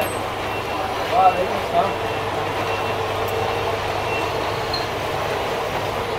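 Steady mechanical hum of workshop machinery, with a faint high beep repeating about every half second and brief distant voices.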